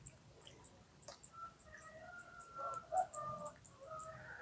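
Faint rooster crowing in the distance: a drawn-out pitched call that swells about halfway through, peaks near the three-second mark and dies away shortly after.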